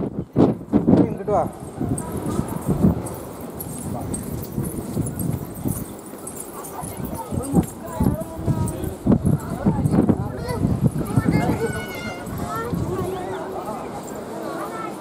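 People's voices talking and calling over irregular knocks and footsteps on a stone platform.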